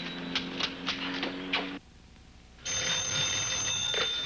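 Old-style telephone bell ringing in repeated rings. It breaks off for about a second shortly before the middle, then rings on steadily.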